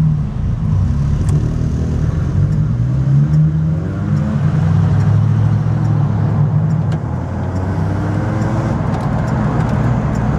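The 327 small-block V8 of a 1968 Chevrolet Camaro RS heard from inside the cabin while driving. The engine note rises as the car pulls away about two seconds in, then settles into a steady drone.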